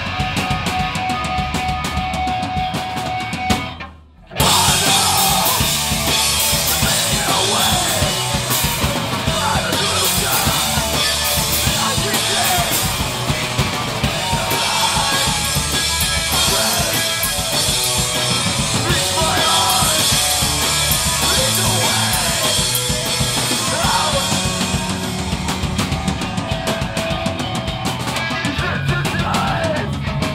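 A live band plays loud, distorted rock with drum kit, electric guitar and bass. About four seconds in, the whole band stops dead for half a second, then crashes back in at full volume.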